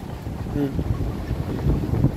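Wind buffeting a smartphone's microphone, an uneven low rumble that swells near the end, with a man's short "hmm" about half a second in.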